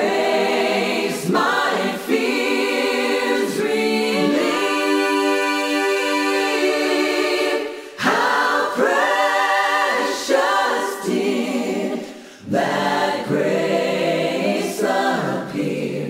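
Choir singing unaccompanied in slow phrases, with a long held chord near the middle and brief breaks between phrases.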